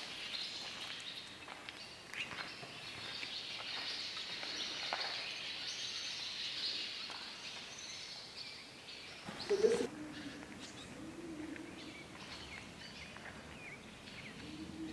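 Faint bird chirps inside a large, empty wooden barn. About nine and a half seconds in comes a louder, lower call that draws out into a soft, low sound lasting to the end.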